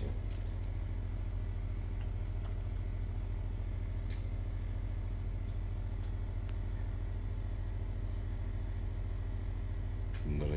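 Steady low electric hum of an aquarium air pump driving the tank's sponge filter, with a few faint clicks.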